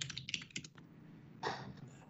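Computer keyboard typing heard over a video-call microphone: a quick run of keystrokes in the first second, then a single softer noise about a second and a half in.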